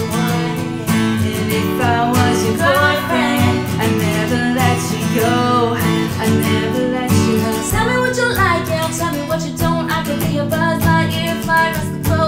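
Taylor acoustic guitar strummed in a steady rhythm, with a capo on, accompanying a female and a male voice singing a pop song in turn.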